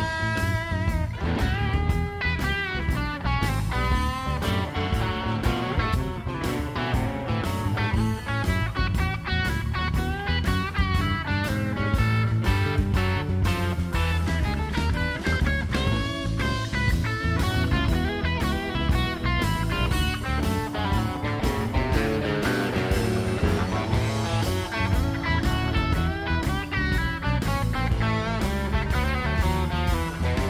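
Live blues-rock band playing an instrumental break: an electric guitar solo with bent notes over steady bass and drums.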